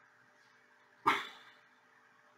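A single short, sharp bark-like sound about a second in, over faint room tone.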